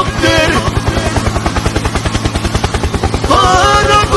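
Meme soundtrack built on a fast, even, low chopping pulse that imitates helicopter rotor blades. A voice sings or chants briefly at the start, and another vocal line comes in near the end.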